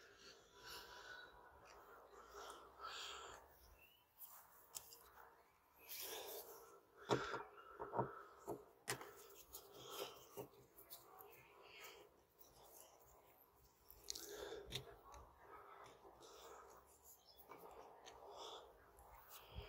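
Faint clicks and scrapes of a screwdriver prising at the plastic cover on a Toyota Land Cruiser 100 Series inside door handle, with several sharper clicks about seven to nine seconds in.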